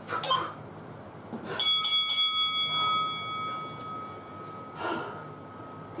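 A bell chimes once about a second and a half in and rings on, fading away over about four seconds. It is the round timer's bell, signalling the end of a round.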